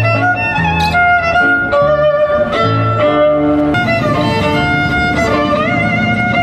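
Violin played live, a bowed melody with vibrato and sliding notes, over an accompaniment of low bass notes and plucked guitar-like chords that change in rhythm beneath it.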